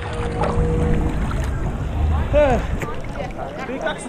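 Seawater sloshing and lapping right against a GoPro held at the water's surface, loudest in the first two seconds. Voices are heard over it from about halfway through.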